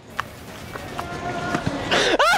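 Busy city-street background noise with a man running on the pavement, then loud laughter breaking out right at the end.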